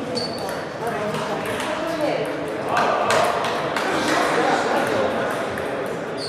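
Table tennis rally: the ball clicking off the paddles and the table in a quick series of sharp hits, with voices chattering in the background.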